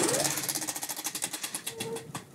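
Spinning game wheel, its pointer clicking rapidly against the pegs, the ticks gradually spacing out as the wheel slows.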